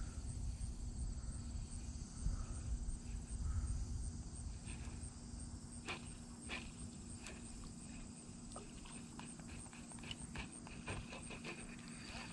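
Low rumble of wind on the microphone with a faint steady hum. From about halfway through come scattered small clicks and ticks from a baitcasting reel being handled and cranked.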